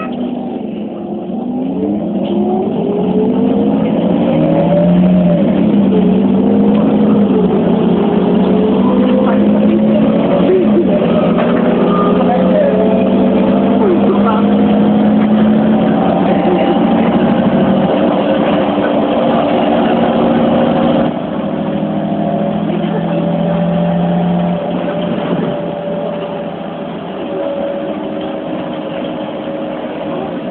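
Iveco Cursor 8 CNG engine of an Irisbus Citelis city bus heard from inside the cabin, pulling hard: its pitch climbs over the first few seconds, dips and climbs again with the automatic gearbox's shifts, then runs on at speed. About two-thirds of the way through the engine eases off and the sound drops to a quieter run.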